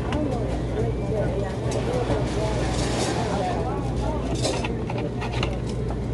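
Busy restaurant dining room: other diners' chatter over a steady low hum, with a few clinks of cutlery and dishes.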